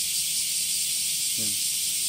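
A steady, high-pitched hiss that holds unchanged throughout, with a brief voiced sound about one and a half seconds in.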